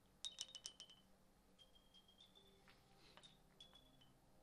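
Billiard balls striking the small skittle pins in the centre of a carom table: a quick cluster of sharp clicks with a high ringing note, then a few lighter clicks and short rings as the pins are handled and set back up.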